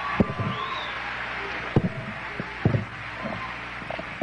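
Live concert audience applauding and cheering, with a short whistle about half a second in and a few sharp knocks.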